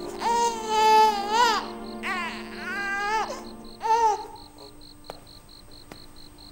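An infant crying in three wailing bursts over the first four seconds, then falling quiet, with low sustained background music underneath.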